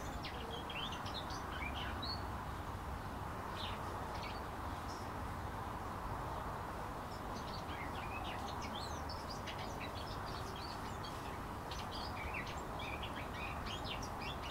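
Small garden birds chirping, with short, scattered high calls throughout over a steady background hiss.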